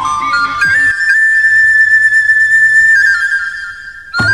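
Background music: a flute-like wind melody climbs in steps to a long held high note, then steps down and fades near the end.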